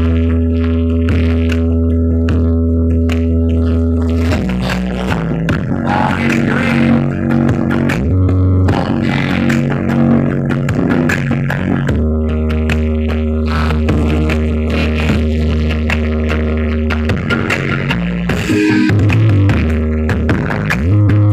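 Loud music played through a truck-mounted sound system built from stacked subwoofer cabinets, with long deep bass notes held for several seconds at a time between shorter, busier passages.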